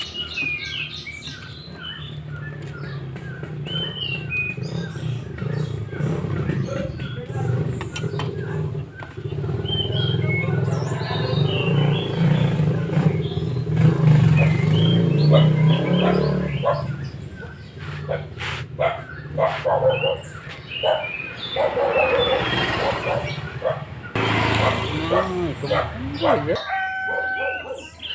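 Metal clinks of a T-wrench on a scooter's final-drive gear-oil drain bolt as the old gear oil is drained, with birds chirping throughout. A low droning rumble swells in the middle and is the loudest sound.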